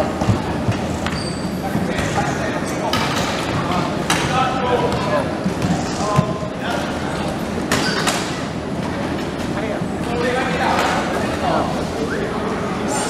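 Players calling out during a wheelchair basketball game, with a basketball bouncing on the court and a few sharp thuds.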